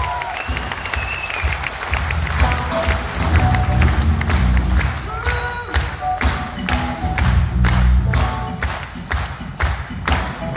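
Live rock band playing a steady groove, with heavy bass and regular drum hits that grow busier in the second half, and some audience cheering.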